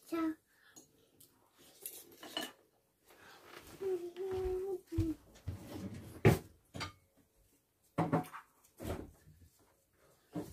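Metal spoons and forks clinking against plates at a meal, a few sharp separate clinks in the second half. A short held tone sounds a few seconds in.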